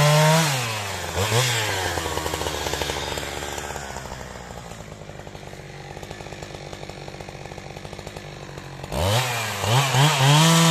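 Husqvarna 372XP two-stroke chainsaw coming off full throttle as a cut ends and dropping to idle, with a brief rev about a second in. It idles with an even pulse for several seconds, then revs up again near the end as the next cut begins.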